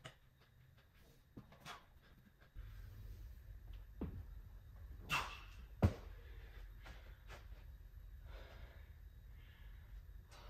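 Dull knocks of hands and feet on a padded gym mat as a gymnast comes down from a wall handstand, the sharpest one just before six seconds in, followed by heavy breathing after the effort.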